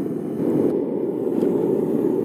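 Propane smelting furnace burner running lit, a steady low rushing noise of the gas flame.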